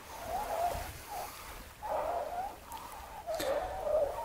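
Singing sand squeaking under palms pressed and swept across a beach: a faint, wavering whistle-like tone that comes and goes four times.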